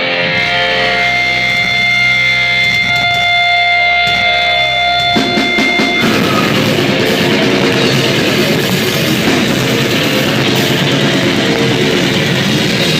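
A brutal death metal band playing live: held, ringing guitar notes for the first five seconds or so, then the full band with drums crashes in and plays on at full volume.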